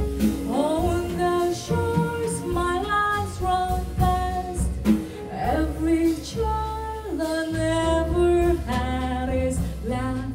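Female jazz vocalist singing a melody of long held notes with glides between them, accompanied by a live jazz band with upright bass.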